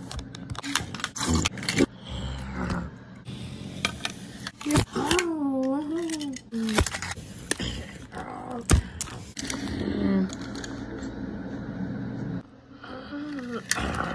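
Die-cast toy cars clacking and scraping against each other in a staged pile-up, with many sharp knocks. A voice makes wordless sounds between them, one wavering up and down about five seconds in.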